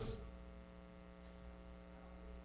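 Steady electrical mains hum in the sound system, a low buzz made of several steady tones stacked together, with faint hiss and no voices.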